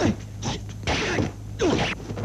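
Dubbed kung fu fight sound effects: a quick run of punch and block hits and swishes, about three in two seconds, over a steady low hum.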